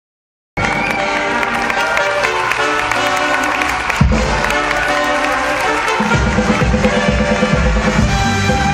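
Music played over the venue's loudspeakers, starting abruptly about half a second in, with a heavy bass beat coming in about six seconds in. Audience applause is mixed in beneath it.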